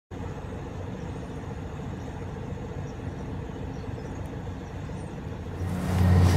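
An engine running steadily at idle, a low even hum. Louder noise swells in near the end.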